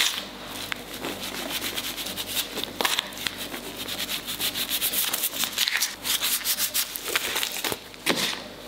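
Hands working soft, sticky semolina dough on a floured work surface: a steady run of soft rubbing and patting strokes with small sticky crackles, thicker in the last few seconds.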